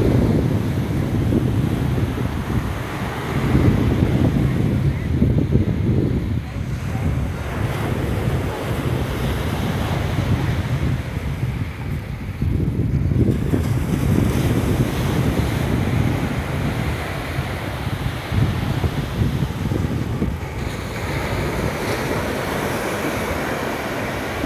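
Small surf washing onto a sandy beach, mixed with wind rumbling on the microphone, the noise swelling and easing unevenly.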